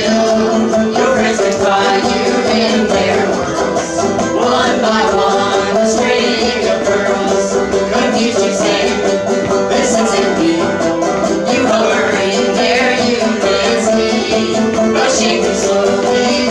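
Live string band playing a bluegrass tune, with banjo, fiddle and guitar.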